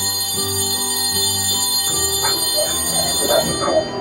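A bell ringing with a steady, shrill high tone over background music, the ringing cutting off shortly before the end; it is the kind of electric bell that ends a school period.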